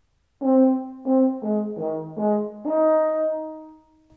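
Euphonium playing a short phrase of about five quick notes that move down and back up, then a longer held note that fades away near the end. The figure begins like a simple arpeggio, but its last note skips one of the arpeggio's notes.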